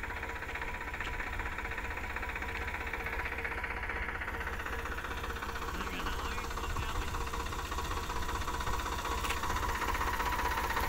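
Engine running steadily at idle, with a low rumble and a faint steady hum; tractors are the engines in view.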